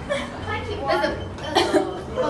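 Indistinct talking from several young people's voices, with a short, sharp vocal burst about one and a half seconds in.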